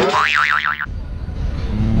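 A cartoon 'boing' sound effect added in the edit: a tone that sweeps up and then wobbles rapidly up and down for under a second before cutting off sharply.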